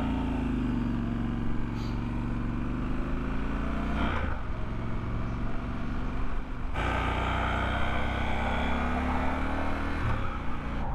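Triumph Scrambler 1200 XE's parallel-twin engine running under way, its pitch easing down and then climbing with the throttle, over wind noise on the microphone. The sound changes abruptly about four seconds in and again about seven seconds in, where riding clips are cut together.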